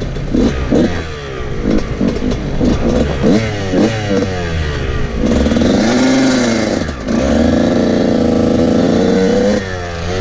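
Dirt bike engine revving through the gears while riding: a string of short rising revs with quick drops between shifts, then a long rev that climbs and falls around six seconds, a brief dip, and a high held rev until near the end.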